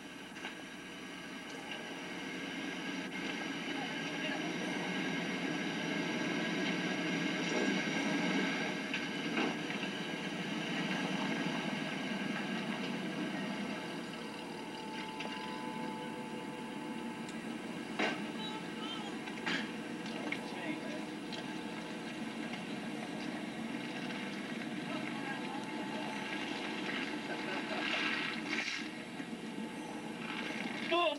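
A vehicle engine running steadily, with indistinct voices.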